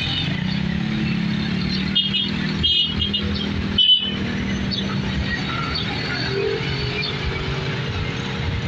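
Busy road traffic passing: motorcycle tricycles, jeepneys and buses running by with a steady engine hum. A few short high-pitched sounds stand out between about two and four seconds in.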